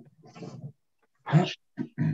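A man clearing his throat in several short, rough bursts, the loudest about one and a half seconds in.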